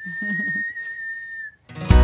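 A steady, high whistling tone held for about a second and a half, easing slightly lower as it stops. Loud background music starts just before the end.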